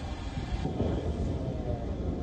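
A low, steady rumble at the scene of a large fuel-tank fire with fire engines standing by. Its higher part drops away about two-thirds of a second in.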